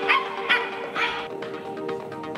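Scottish terrier barking three times, about half a second apart, over background music.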